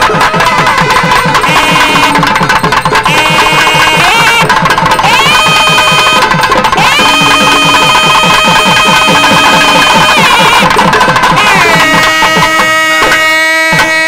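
Temple ritual music: a reed pipe plays long notes that glide and step between pitches over fast, steady drumming. Near the end the notes settle into a steady held tone.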